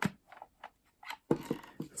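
Plastic clicks and snaps of a 35mm bulk film loader's safety lever and lid being opened: a sharp click, a few faint ticks, then a run of louder clicks in the second half.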